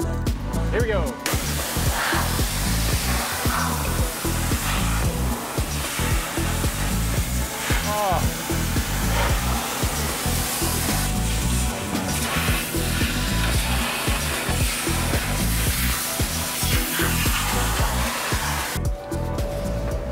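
Pressure washer spraying a steady hissing jet of hot water onto metal under trays and a car's undercarriage, starting about a second in and stopping shortly before the end. Background music with a steady beat plays underneath.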